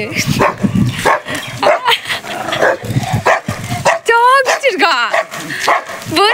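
Dogs barking and yipping, with a high, wavering whine about four seconds in.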